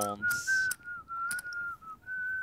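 A person whistling a short tune, a single clear line of notes moving in small steps around one pitch, with a brief break near the end.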